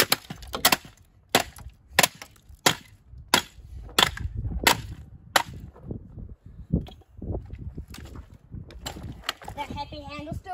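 A hatchet chopping into a plastic Bissell steam mop on the ground: about nine sharp blows, evenly spaced about two-thirds of a second apart. After them come fainter, irregular knocks and clatter as the broken pieces are moved.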